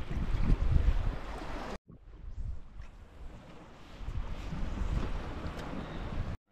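Wind buffeting the microphone over the wash of the sea against rocks, gusty and rumbling. It cuts out abruptly for an instant about two seconds in, then carries on.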